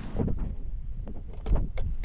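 Wind rumbling on the microphone, with a few sharp clicks and knocks, the loudest about a second and a half in, as the phone or camera is handled.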